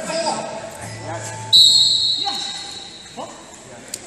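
A referee's whistle blown once, sudden and loud, about one and a half seconds in, fading over about a second in the large hall, with voices around it.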